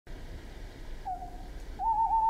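A soft, pure whistle-like tone opens the track: one short note about a second in that slides slightly down, then a longer, slightly higher note that begins near the end, over faint hiss.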